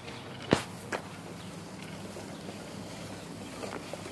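Two sharp clicks about half a second apart, the first the louder, over a faint steady low hum and outdoor background.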